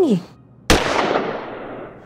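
A sudden sharp crash-like hit with a noisy tail that fades away over about a second, an edited-in sound effect marking the cut to a new scene.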